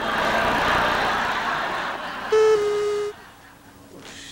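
A steady rushing noise for about two seconds, then a short, loud horn toot that steps slightly down in pitch, serving as the comedy sketch's sound effect between jokes.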